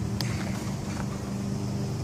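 A motor engine running steadily with a low, even hum, with a single faint click shortly after the start.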